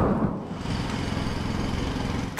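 A low, engine-like rumble with a rapid flutter. It is loudest at the very start, where a swell peaks, then runs on steadily.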